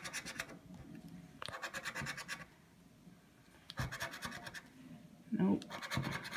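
Scratch-off lottery ticket being scraped with a small blue scraper: three short bursts of quick rubbing strokes over the latex coating, with pauses between.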